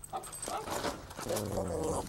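A dog whining and yipping in a quick run of short calls that bend in pitch, with light rustling of gift wrap and ribbon.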